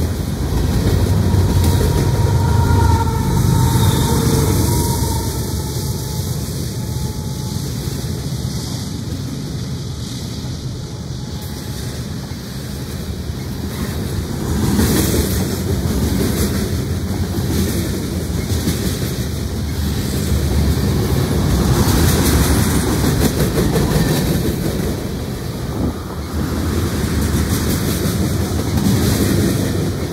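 Freight train cars, mostly covered hoppers, rolling past close by: a steady loud rumble with wheels clattering over the rail joints, and a faint squealing tone during the first several seconds.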